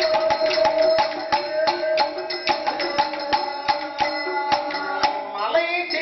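Villu paattu folk music: the large bow strung with bells is struck in a steady beat of about four strokes a second, with its bells jingling, over a held melodic tone. A singer's voice comes in near the end.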